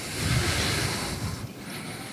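A soft rushing noise with no speech, lasting about a second and a half before it fades.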